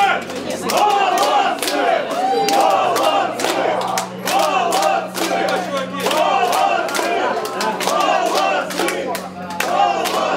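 Concert crowd shouting and chanting together between songs, many voices at once with sharp claps scattered through it, over a steady low amplifier hum.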